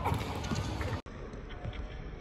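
Badminton players' quick footsteps on an indoor court during a rally, mixed with racket hits on the shuttlecock. The sound cuts out for an instant just after halfway.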